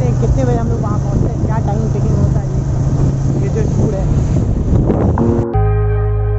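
TVS Apache motorcycle's single-cylinder engine running steadily at cruising speed, with wind noise on the microphone. Music cuts in suddenly near the end.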